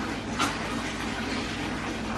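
Water in a bathtub, heard as a steady rushing hiss, with a brief splash about half a second in as a toddler plays in the bath.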